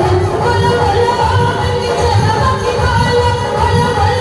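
A Hindu devotional bhajan sung into a microphone over amplified music with a steady drum beat.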